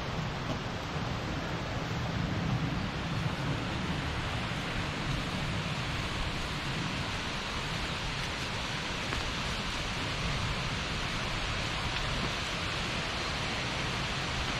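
Steady, even rushing of a nearby mountain stream over stones, with no distinct events.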